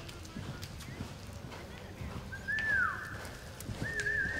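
A reining horse's hoofbeats on soft arena dirt as it lopes its circles, with a loud whistle about two and a half seconds in, held briefly and then falling in pitch.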